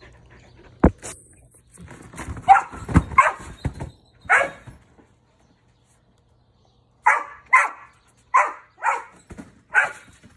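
A dog barking while bouncing on a trampoline. Dull thumps from the mat come under the first barks, then there is a short silent gap, then a run of barks about two a second near the end.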